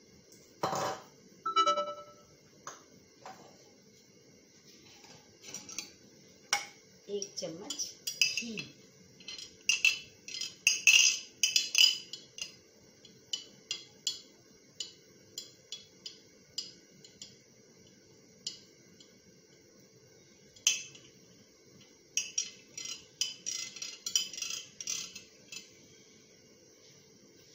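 Dishes and metal utensils clinking and clattering in irregular short bursts, busiest about a third of the way in and again near the end, over a faint steady hum.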